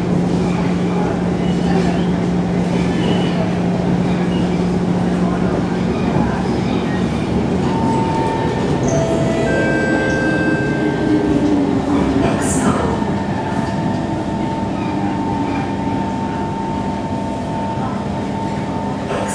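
Inside an SMRT C151 metro car under way: steady running noise of wheels on rail and the car body, with a low hum. Around the middle, whining tones from the train slide down in pitch, and a steady higher tone follows.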